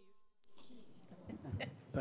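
A single high-pitched steady electronic tone lasting about a second, swelling briefly about half a second in before fading, followed by faint talk in the hall.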